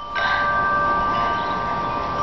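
Background music of sustained, chime-like tones holding steady.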